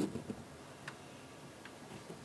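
Quiet meeting-room tone with a few faint, light clicks, one about a second in and another a little later.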